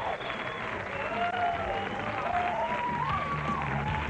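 Studio audience applauding and calling out, with a song's backing music starting underneath.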